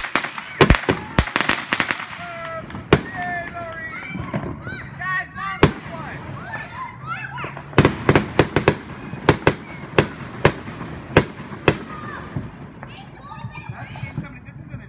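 Consumer aerial fireworks bursting overhead: a string of sharp bangs, a quick cluster in the first two seconds and another run from about eight to twelve seconds in, with scattered pops between.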